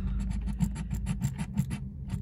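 A handheld scratcher tool scraping the coating off a scratch-off lottery ticket in quick, repeated strokes.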